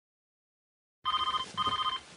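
Silence for about a second, then a telephone ringing twice in quick succession, each ring a short trilling double tone.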